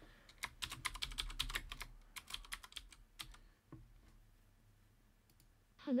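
Typing on a computer keyboard: a quick run of keystrokes for about three seconds, then one more click a little later.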